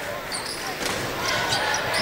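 Basketball arena ambience during live play: crowd noise with a basketball being dribbled on the hardwood court.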